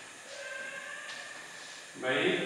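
Chalk scratching on a blackboard as a word is written, over a steady hiss.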